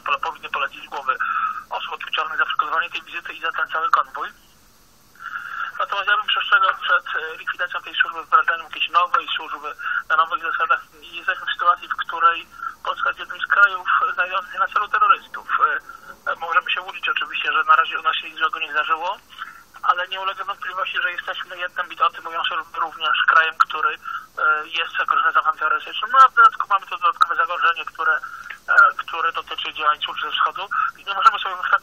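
Continuous speech with a thin, narrow sound, like a voice over a telephone line, pausing briefly about four seconds in.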